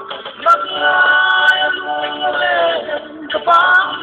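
A song: a voice singing long, held notes over music, one drawn-out note sliding down near its end, then a short break and a new phrase starting.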